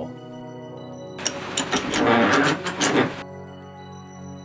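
Metal workshop clatter, a burst of rattling with several sharp metal clanks lasting about two seconds that cuts off suddenly, as a steel connecting-rod cap is worked at a bench vise, over steady background music.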